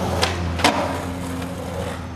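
Skateboard wheels rolling with a steady low rumble, with two sharp clacks of the board, about a quarter and two-thirds of a second in, the second louder.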